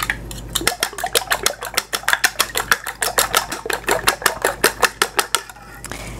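A fork beating raw eggs in a small bowl, its tines ticking quickly and evenly against the side of the bowl. It stops shortly before the end.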